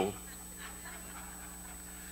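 Quiet pause in speech: room tone in a hall with a faint steady hum and a soft, faint rustle of sound a little way in.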